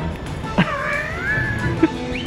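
A single high-pitched, wavering cry lasting about a second, starting about half a second in, over background music.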